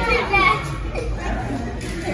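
Children's voices, with a high, bending squeal about half a second long right at the start, over background music.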